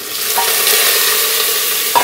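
Bottle gourd cubes hitting hot oil and fried onions in a pressure cooker: a loud sizzle that starts suddenly as the pieces go in and holds steady, with one sharp knock near the end.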